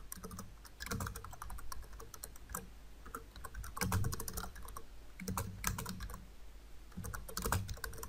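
Typing on a computer keyboard: irregular runs of key clicks with short pauses between words.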